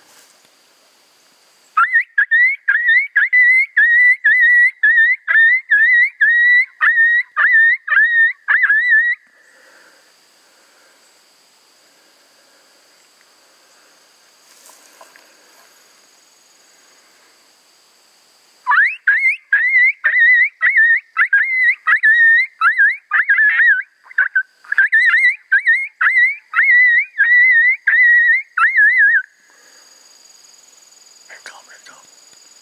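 Two-reed pup howler coyote call blown in two long runs of quick, high yelps, about two to three a second, each note sliding sharply up and wavering. The first run lasts about seven seconds; after a quiet gap of about ten seconds a second, longer run follows.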